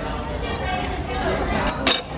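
A single sharp clink of metal cutlery on tableware near the end, over a steady murmur of voices in the dining room.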